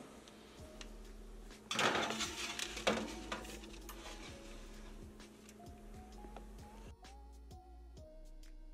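A metal baking sheet scraping and clattering onto an oven's wire rack, loudest about two seconds in, with a sharp clunk about a second later. Soft background music runs under it, and from about seven seconds in only the music is heard.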